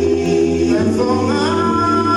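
Gospel vocal music: sung voices holding long notes, the melody sliding up in pitch about a second in.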